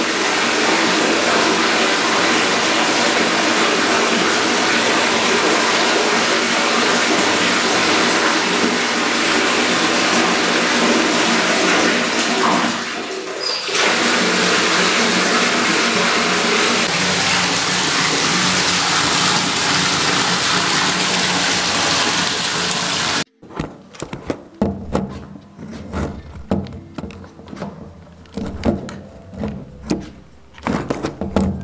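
Tap water running steadily into a bathroom sink, stopping abruptly about 23 seconds in, followed by quieter irregular knocks and handling sounds.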